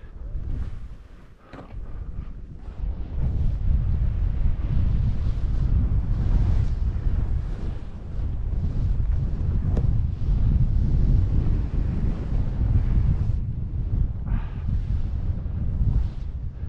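Wind rushing over a helmet-mounted action camera's microphone during a fast ski descent through powder snow, mixed with the hiss of skis and spraying snow. It is quieter for the first couple of seconds, then a heavy, steady rumble from about three seconds in.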